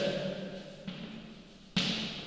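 Chalk writing on a blackboard: a few short scratching strokes, the sharpest and loudest near the end.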